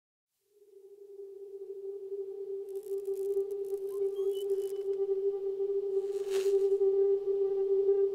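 Ambient drone music: one steady low tone that fades in and slowly swells louder, with faint shimmering high sounds and a brief whoosh a little after six seconds.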